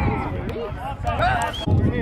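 Overlapping voices of players and coaches talking and calling out, none of it clear, over a low outdoor rumble.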